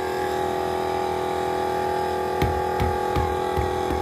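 Small plug-in portable air compressor running steadily with a constant motor hum while it inflates a flat car tyre. A few dull knocks come in the second half.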